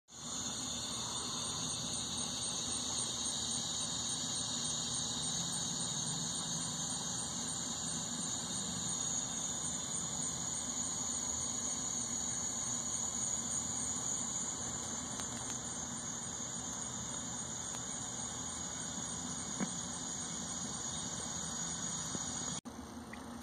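A chorus of cicadas droning steadily at a high pitch, over a faint low rumble.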